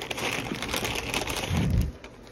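Crinkling and rustling of a clear plastic packaging bag being handled, with a dull low thump of handling noise near the end.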